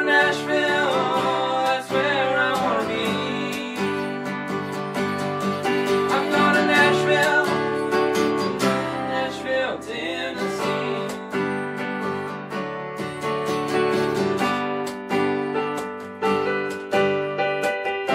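A country song played live on strummed acoustic guitar and keyboard, with two male voices singing together in the first half; the singing stops about ten seconds in and the guitar and keyboard play on.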